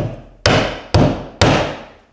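Lather's hatchet (drywall hammer) striking a drywall nail four times, about half a second apart, each blow ringing briefly and fading. The rounded striking face is driving the nail so that it sits just below the drywall surface, and the result is not that bad.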